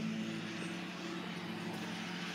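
Steady low mechanical hum at a constant pitch, an engine or motor running without change, over faint outdoor background noise.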